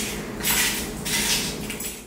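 Plastic packet rustling and crinkling as it is handled, in two louder bursts, fading out near the end.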